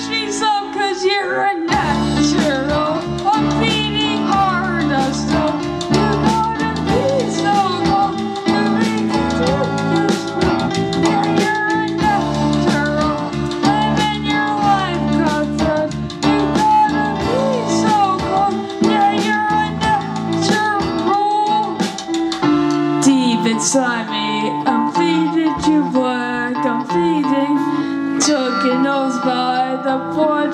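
Live rock band playing an instrumental passage: electric guitar, drum kit and a bending lead melody over the band.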